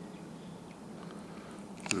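A man coughs once near the end, sharp and the loudest sound here, over a faint steady background hum.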